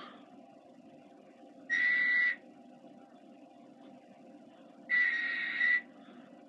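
Two short, steady, high whistle tones, each held at one pitch for under a second, about three seconds apart.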